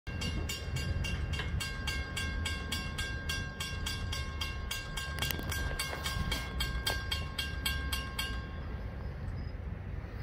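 Railroad grade-crossing bell ringing in quick, even strikes, about three a second, while the crossing gates come down; it stops about eight seconds in, once the gates are down. A steady high tone runs under the bell for most of its ringing, over a low rumble.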